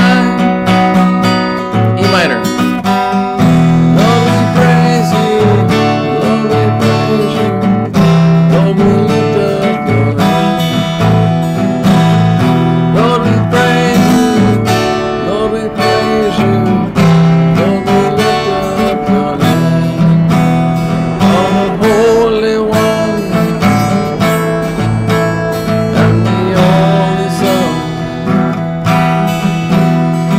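Acoustic guitar strummed in a steady rhythm, moving through a chord progression.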